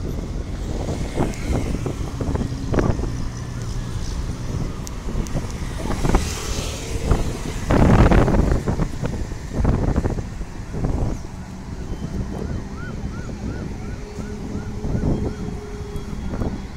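Road traffic going past, a low rumble with wind buffeting the microphone; it is loudest about halfway through as a vehicle passes close by. Near the end, a run of short repeated chirps, about two a second, sounds over the traffic.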